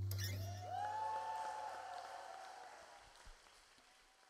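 The band's last held chord cuts off, then an audience applauds and someone gives a long rising whoop, the sound fading away.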